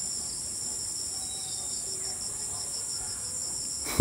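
Steady, high-pitched chorus of insects, such as crickets, shrilling continuously in the surrounding vegetation.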